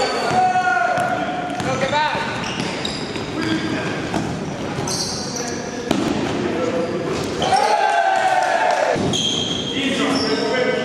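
Basketball game sounds in an echoing gym: a basketball bouncing on the hardwood court, with players' voices calling out. Sharp knocks come about 4, 6 and 9 seconds in.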